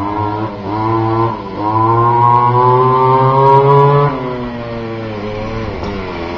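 Goped Xped gas scooter's ported G23LH two-stroke engine revving as it rides closer. The pitch climbs in short throttle bursts for about four seconds, then drops back as the throttle is eased off and the engine runs lower.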